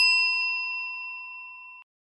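A single bright bell-like ding sound effect, ringing and slowly fading, then cutting off suddenly near the end.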